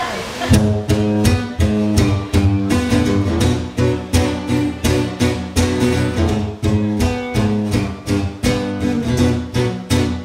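Guitar strummed in a steady rhythm, starting about half a second in, with low notes ringing under each stroke: the opening of a song played live.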